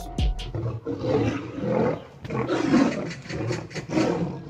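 Big cats roaring and growling, rising and falling in several rough swells about a second apart.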